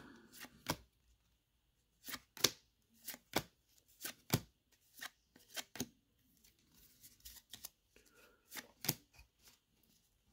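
Stack of paper baseball trading cards being handled, each card slid off the front and tucked behind the stack, making short clicks, often in quick pairs with gaps between.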